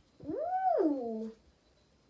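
A child's wordless 'ooh' after a sip of drink: one call of about a second that rises in pitch and then falls.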